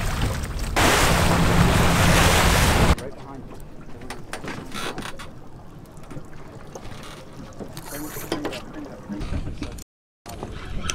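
Splashing from a cobia thrashing in a landing net at the boat's side, with wind on the microphone and a steady low engine hum. About three seconds in it cuts off suddenly to quieter water and wind with scattered small knocks.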